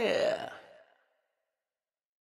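The song's final held sung note drops in pitch and fades out about half a second in, leaving silence.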